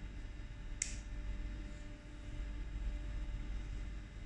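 A single short, sharp plastic click about a second in from the red flow switch of a BD Floswitch arterial cannula being worked, closing the valve, over a faint low room hum.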